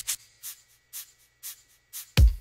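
Breakdown in a deep house track: the kick drum drops out, leaving only faint high percussion ticks about every half second.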